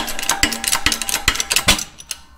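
Hydraulic shop press pushing the old oil seal out of a bevel shaft bearing cap: a rapid run of metallic clicks with heavier knocks about twice a second, stopping shortly before the end.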